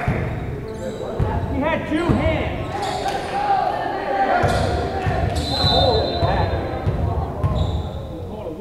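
Gym game noise during a volleyball rally: players and spectators calling out in an echoing gymnasium, with thuds of the ball being struck and a few short high squeaks.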